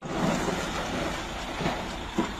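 Heavy three-axle dump truck's diesel engine running steadily as the truck moves slowly over a dirt and gravel roadbed.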